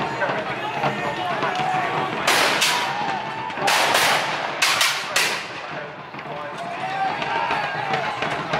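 Black-powder muskets firing blank charges in a ragged volley: about seven sharp shots in quick clusters, starting about two seconds in and ending a little after five seconds.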